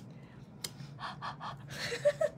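A person's short, quick breaths and a gasp, with a single faint click about half a second in.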